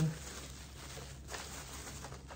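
Plastic bubble wrap rustling faintly as it is handled, with a few soft crinkles.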